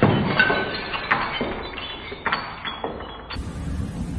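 Things falling and breaking: a run of crashes and glassy clinks, one after another, over about three seconds. It cuts off near the end into a low steady rumble.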